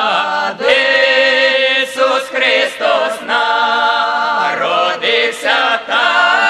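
Ukrainian folk vocal ensemble of women's and men's voices singing unaccompanied in harmony, in the traditional village style, holding long notes with short breaks between phrases.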